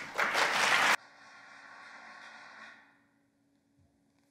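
Audience applause at the end of a choir piece, loud for about a second and then cut off abruptly, leaving a faint trace that fades out before three seconds in.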